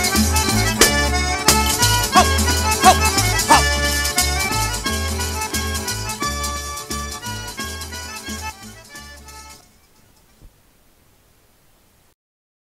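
Calabrian tarantella played on accordion over a steady repeating bass, fading out and ending about ten seconds in.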